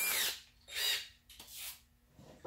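Cordless drill run in three short bursts while the shaft of a polishing attachment is fitted into its chuck.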